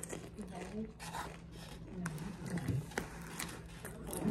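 A person chewing a crunchy fried rolled taco, with faint, scattered crackles. A few low hummed vocal sounds come through his closed mouth, about half a second in and again around two to three seconds.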